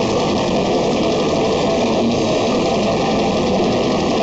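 Extreme metal band playing live at full volume: distorted electric guitars and bass over very fast, dense drumming, with no let-up.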